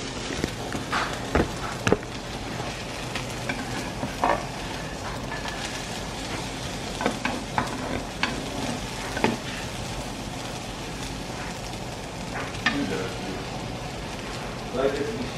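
Food sizzling in a frying pan, with a spatula scraping and knocking against the pan every few seconds.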